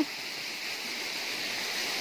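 Waterfall and stream water rushing steadily, an even hiss with nothing else standing out.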